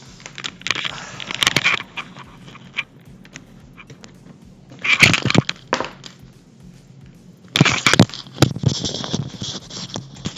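Handling noise on a desk: rustling, scraping and small knocks of things being moved and set up. It comes in three bursts, near the start, about halfway through and towards the end.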